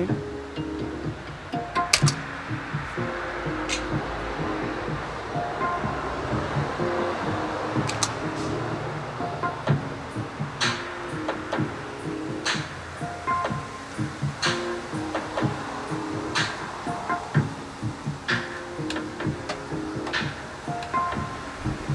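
Archtop hollow-body electric guitar played fingerstyle: slow picked notes and chords left to ring, with a sharp pluck every couple of seconds.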